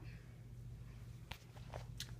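Quiet handling noise over a low steady hum, with two light clicks a little past the middle.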